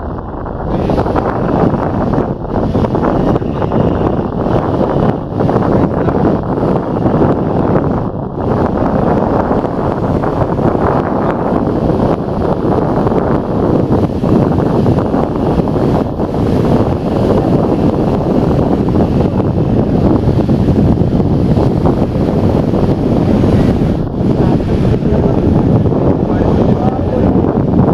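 Strong wind buffeting the microphone: a loud, steady, rough rumble that covers any sound of the water or the launch.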